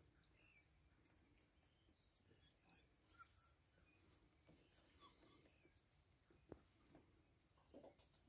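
African wild dog pups squeaking and twittering in a run of short, high-pitched chirps between about two and five seconds in, loudest near four seconds.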